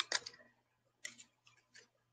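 A few faint, separate clicks, about a second in and again near the end, over a low steady hum.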